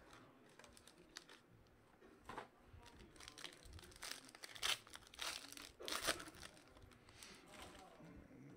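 A trading-card pack's shiny foil wrapper being torn open and crinkled by hand: an irregular run of crackles, loudest from about four to six seconds in.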